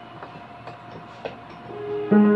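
Quiet gap on a Roland EA7 arranger keyboard: a faint held tone fades out while three short clicks are heard, the panel buttons being pressed to change the voice.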